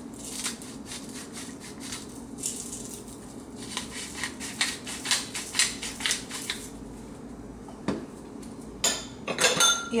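A hand-twisted salt and pepper grinder grinding seasoning over a stainless steel bowl: a quick run of dry, crunchy clicks for several seconds, stopping about seven seconds in. A steady low hum sits underneath.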